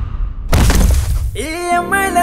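A loud, sudden crashing hit with a low rumbling boom about half a second in, dying away over most of a second: a trailer's sound-design impact effect. Music with sustained tones swells in near the end.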